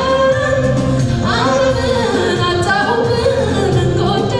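Gospel song: singing over steady instrumental backing, the melody sliding up into a new phrase a little over a second in.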